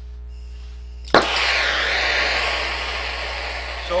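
DHC2000 torch with an air-acetylene tip, running on acetylene alone at 4 psi, lit with a flint striker. It catches with a sharp pop about a second in, then the flame burns with a steady, loud hiss.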